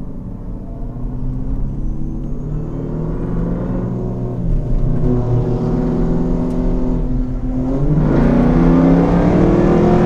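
Jeep Grand Cherokee Trackhawk's supercharged 6.2-litre V8, heard from inside the cabin, running and growing steadily louder. Its pitch shifts in steps, dips briefly about seven seconds in, and then surges louder from about eight seconds.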